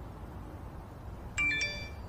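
A phone's message alert: a quick two-note bell-like chime about a second and a half in, ringing briefly over a low steady background hum.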